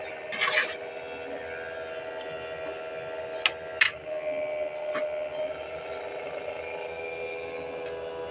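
Metal spoon scraping through a thick, sticky mixture in a metal wok, with a few sharp knocks of the spoon against the pan, about three and a half seconds in and again around five seconds. A steady hum runs underneath.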